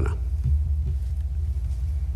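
A pause in speech filled by a steady low rumble with a faint hum: background noise of the room picked up by the open microphones.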